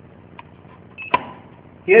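A short, high electronic beep followed at once by a sharp click about a second in, over quiet background hiss.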